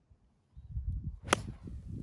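A 9-iron striking a golf ball off the tee: one sharp crack just over a second in, over a faint low rumble.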